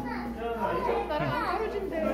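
Voices chattering, several people talking at once, with no single clear speaker.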